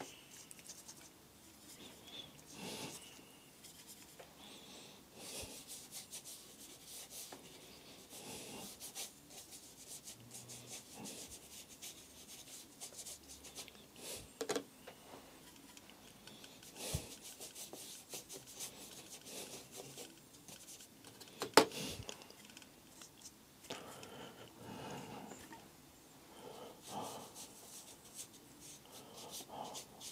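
Watercolour brush stroking across textured watercolour paper, soft intermittent rubbing strokes. A few sharp taps break in, the loudest about two-thirds of the way through.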